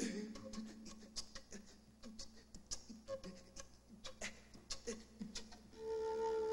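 Sparse, quiet, irregular clicks and short breathy pops from a small wooden flute played close to the microphone, with a few brief pitched blips and a faint steady low tone underneath.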